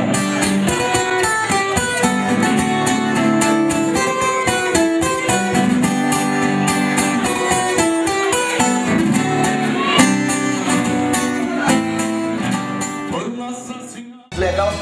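Acoustic guitar playing an instrumental passage of a song, notes struck in a steady rhythm, fading out over the last couple of seconds.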